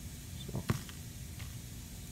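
Quiet room tone with a low steady hum, broken by one sharp click about two-thirds of a second in and a faint tick near the end.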